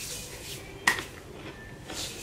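Quiet kitchen room tone with one sharp tap or click a little under a second in.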